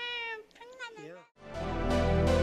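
A woman's drawn-out, high-pitched vocal exclamations, the second one falling in pitch; after a short gap, background music starts about three-quarters of the way through.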